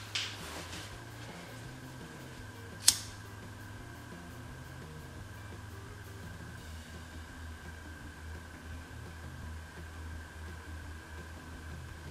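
A lighter struck once, a single sharp click about three seconds in, lit to melt and seal the raw edge of a polyester petticoat. A steady low hum runs underneath.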